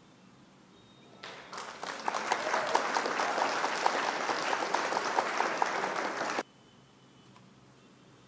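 Applause sound effect: a crowd clapping that fades in about a second in, swells, holds steady and cuts off abruptly a few seconds later, cueing the correct answer reveal.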